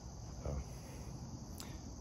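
Steady high-pitched insect chorus trilling in the background, with one short spoken word about half a second in.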